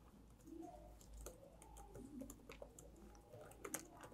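Faint typing on a laptop keyboard: a loose, irregular run of soft key clicks, with a few sharper strokes near the end.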